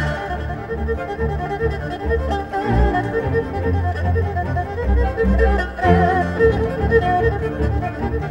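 Solo erhu with a Chinese traditional orchestra, playing a passage of quick, short repeated notes over low pulsing notes underneath.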